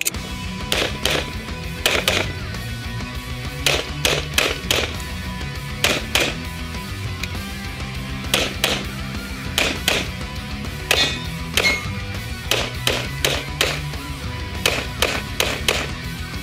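Background music with a steady bass line, cut through by sharp cracks at uneven intervals, many in quick pairs a fraction of a second apart: shots from a 9mm Grand Power X-Calibur pistol fired as double taps on targets.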